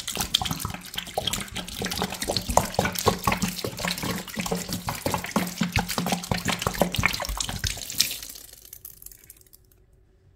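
Pine disinfectant cleaner poured in a thin stream onto sponges sitting in a shallow pool of the liquid, splashing and trickling steadily. The pour tails off about eight seconds in.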